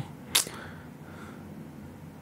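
Quiet room tone with one short, sharp hiss about a third of a second in.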